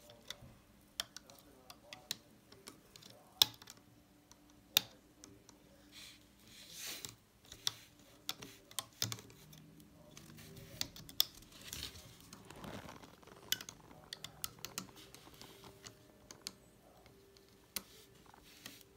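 Irregular sharp clicks and taps of a metal loom hook and rubber bands against the plastic pins of a Rainbow Loom as bands are hooked, pulled up and looped over the pins.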